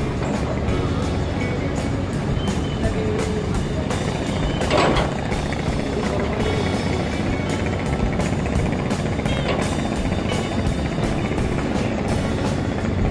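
Boat engine running steadily with a low rumble and rapid clatter, with music mixed in.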